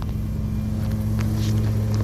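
A lawn mower engine running steadily, a low even hum, with a few light crinkles from the plastic bait bag being handled.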